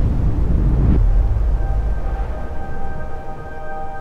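Low rumble of wind buffeting the microphone, which cuts off about a second in. Sustained music notes then fade in and hold steady.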